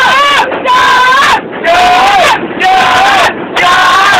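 A group of voices chanting loudly in drawn-out shouts, about one a second.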